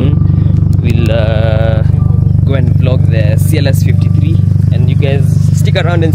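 Subaru WRX STI's turbocharged flat-four engine idling close by, a loud, steady low drone that does not change. Voices talk over it.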